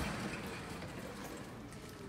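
A heavy wooden sliding barn door being pushed open along its track: a low, noisy rumble that slowly fades.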